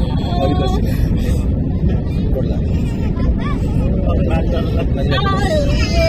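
Jet airliner on final approach, heard from inside the cabin: a loud, steady rumble of engines and airflow, with faint voices over it.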